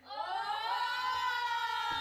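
Several women screaming together in one long, high-pitched shriek that starts suddenly and is held steady.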